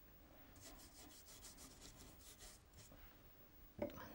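Near silence with faint rubbing strokes of a paintbrush laying a watercolour wash on paper.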